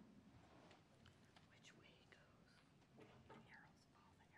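Near silence: faint, distant voices off the microphones, with a few small ticks and rustles.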